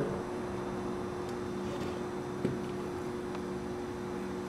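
A steady low hum of room tone, with one faint click about two and a half seconds in.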